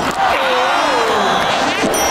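Cartoon stadium crowd noise, with a single wavering tone gliding down in pitch over it and a quick sweep with a few sharp strokes near the end.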